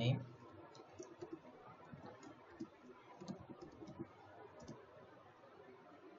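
Faint, irregular clicks of computer keyboard keys as a short name is typed, stopping about a second before the end.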